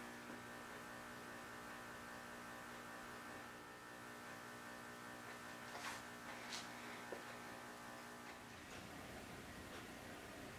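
Faint, steady electrical hum with many evenly spaced overtones, which stops about eight and a half seconds in. A couple of faint ticks about six seconds in.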